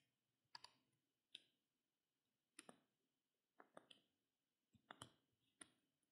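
Faint computer mouse clicks against near silence, about half a dozen scattered through the moment, several as quick doubled clicks.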